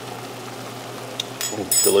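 Sauce simmering in a stainless steel pan on a lit gas burner, a steady low hiss, with a few short high clicks near the end.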